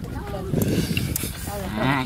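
A cow mooing, one low call lasting about a second, followed by voices near the end.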